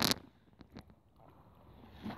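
Faint handling sounds from a keepnet of chub being worked by hand: a few light clicks, then soft rustling of the wet mesh.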